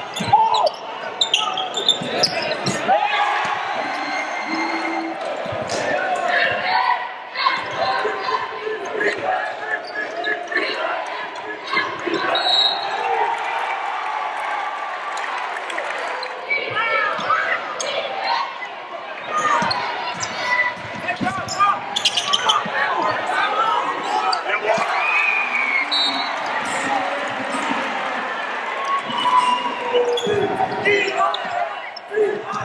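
Basketball game sound in a gym: a ball bouncing on the hardwood court amid a steady din of spectators' voices and shouts, echoing in the large hall.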